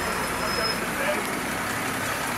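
Refuse collection lorry's engine running as the lorry rolls slowly past at close range: a steady, even rumble.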